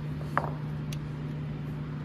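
Two small metallic clicks, one near the start and one about a second in, as the parts of a connecting-rod hone mandrel and its diamond stone are handled, over a steady low hum.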